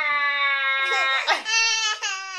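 A toddler's long, high-pitched squeals: one held steady for about a second, a quick breathy catch, then a second squeal that falls away at the end.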